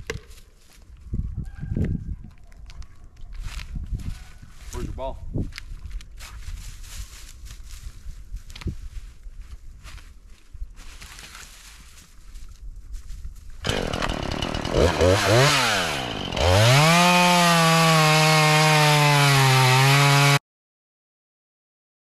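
Rustling and footsteps in dry leaf litter for the first half. About two-thirds in, a gas chainsaw starts, its engine swinging down and up in pitch. It then runs at full throttle, dipping slightly in pitch as it bites into a cherry log, and cuts off suddenly near the end.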